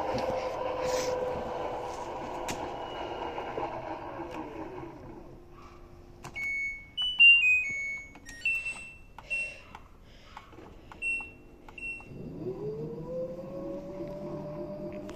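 LG WD-10600SDS washer's direct-drive motor whining as the drum spins, the whine falling away as the drum slows to a stop. Then the control panel beeps as buttons are pressed, including a short falling run of beeps, the loudest sound, and near the end the motor whine rises again as the drum starts to spin up in service mode.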